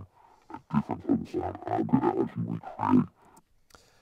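Recorded spoken dialogue played back through a pitch-shifting, distortion and LFO-modulated filter chain with EQ, coming out as a voice-like neurofunk bass sound that still keeps the rise and fall of speech. It plays in short phrases, starting about half a second in and stopping about three seconds in.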